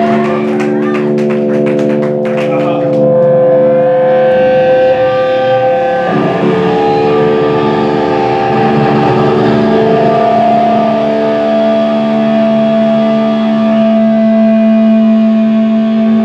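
Distorted electric guitars holding long, ringing chords and feedback, the held notes sliding and changing pitch a few times, with drum or cymbal hits during the first few seconds.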